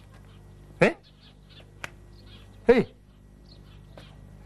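A man's voice calling two short coaxing words, each falling in pitch, with faint bird chirps behind.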